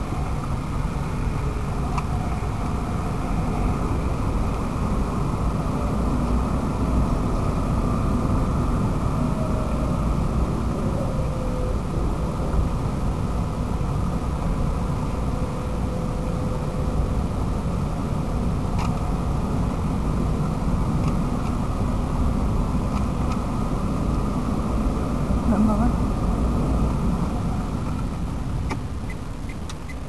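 Steady car-cabin noise while driving at road speed: engine and tyre rumble with wind coming in through an open window.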